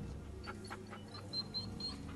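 A golden retriever whining faintly on a film soundtrack, a few short, thin, high cries about a second in.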